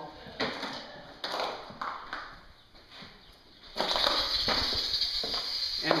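Footsteps crunching over loose demolition debris on a bare floor: several short, noisy crackling steps. Near the end, a louder steady hiss with a low rumble takes over.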